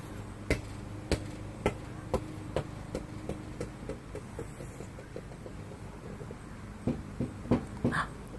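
A ball bouncing, each bounce fainter and quicker than the last until it settles about five seconds in, followed by a few more knocks near the end, over a faint steady low hum.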